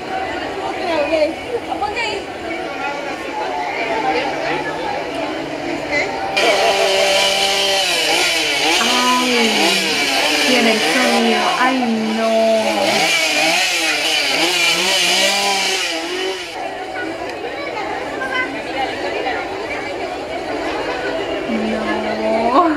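A chainsaw revving over and over for about ten seconds, starting about six seconds in and cutting off sharply, its pitch rising and falling with each rev. Crowd voices underneath.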